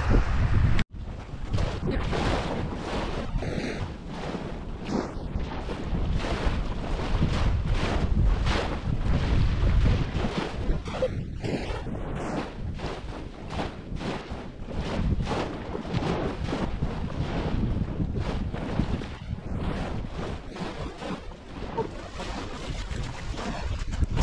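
Wind buffeting the microphone, with a continuous rumble and uneven gusts, over small waves breaking and washing on a sandy shore.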